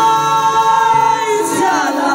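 A woman singing a gospel worship song into a microphone, holding one long note that slides down about a second and a half in, over a live band with bass guitar.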